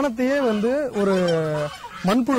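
Speech only: a man talking, with one long drawn-out vowel about a second in.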